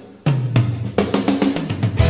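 A drum kit playing a quick fill of strikes on the toms and snare with cymbals, the drum pitch stepping lower toward the end, leading into the song.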